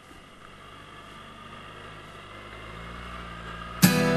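Suzuki Burgman 650 scooter's engine and road noise growing steadily louder as it pulls away, then strummed acoustic guitar music cutting in abruptly near the end, louder than everything before it.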